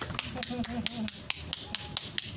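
Scattered hand clapping from a small group, separate sharp claps about four a second that thin out near the end.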